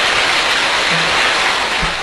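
Large audience applauding: a dense, even patter of many hands clapping.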